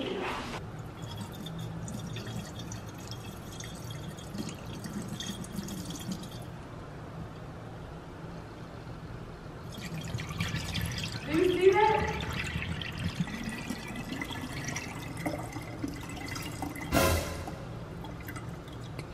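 Spoiled almond milk, gone slimy and clumped, pouring from a plastic jug into a stainless steel sink drain, starting about ten seconds in: splashing, with a couple of glugs from the bottle neck shortly after. A single sharp knock near the end.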